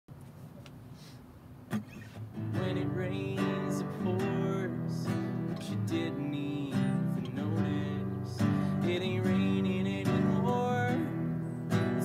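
Nylon-string classical guitar playing a chord intro, coming in about two and a half seconds in after a single soft tap.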